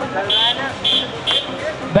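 Men's voices talking, with three short high-pitched beeps about half a second apart.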